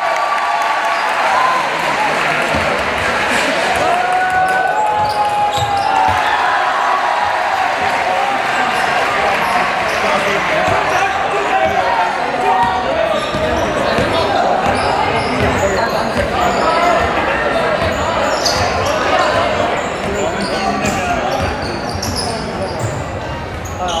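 Basketball bouncing repeatedly as it is dribbled on an indoor court, over a steady hubbub of players' and spectators' voices, with a few raised shouts in the first few seconds.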